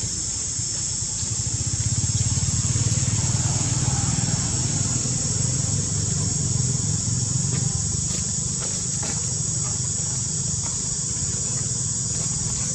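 Outdoor ambience: a steady, high insect drone with a low rumble underneath that grows louder about two seconds in and then holds.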